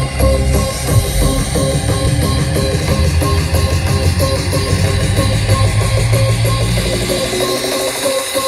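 Music from a DJ minimix of a dance remix, with a steady beat and heavy bass; the bass drops out just before the end.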